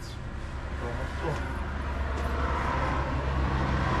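Motor-vehicle noise: a steady low engine hum, with road noise from a vehicle growing louder through the second half.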